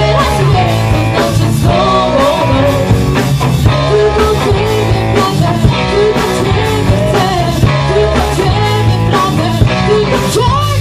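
A live rock band playing a song: a singer's voice over drums, bass and electric guitar, with a steady drum beat.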